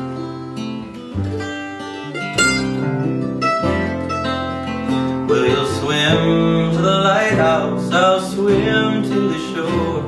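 Acoustic folk trio playing an instrumental break: acoustic guitar strumming, upright bass and mandolin. A higher, bending melody line comes in about halfway through and carries the rest of the passage.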